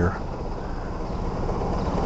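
Large scooter's engine idling steadily while stopped: a low, even hum.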